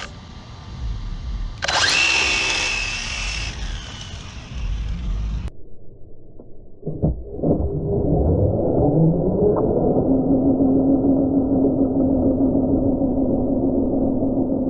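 RC drift car doing a burnout on asphalt: its motor whines and its rear tyres spin and scrub, loudest in a burst about two seconds in. About five seconds in the sound turns muffled, and from seven seconds on a steady drone with a low hum runs.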